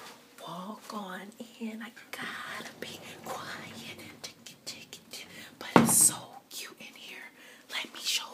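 A woman whispering to the camera in a small room. There is one short, louder burst of sound just before six seconds in.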